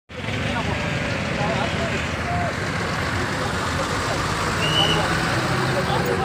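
A crowd of people talking over one another beside a busy road, with steady traffic noise underneath.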